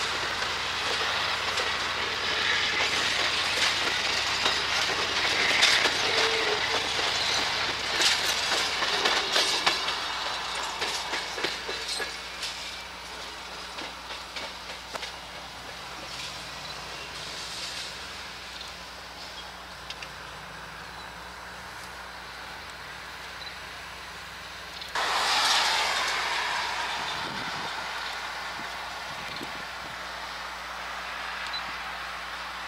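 Amtrak passenger cars rolling past, their wheels clicking rapidly over the rail joints, the clatter fading away within the first half as the rear private car passes and the train recedes. A sudden rush of noise starts near the end and slowly dies down.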